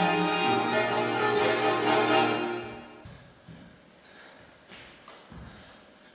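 A small chamber ensemble of bowed strings and guitar playing a piece that breaks off abruptly about two and a half seconds in. After the stop, only a few faint low thuds are heard.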